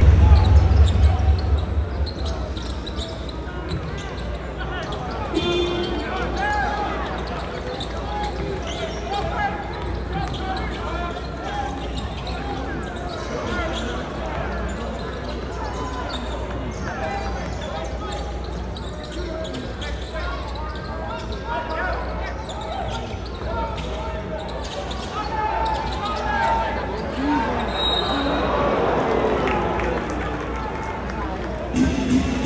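Basketball arena during live play: a basketball dribbling on the hardwood court under a steady babble of crowd chatter. Loud deep bass from the arena sound system fills the first two seconds, then falls away.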